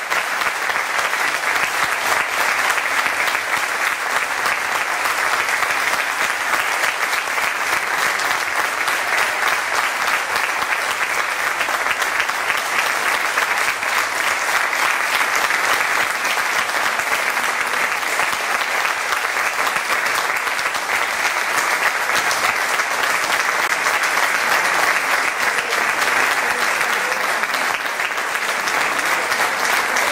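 Large seated audience applauding steadily and at length, a sustained ovation at the close of a speech.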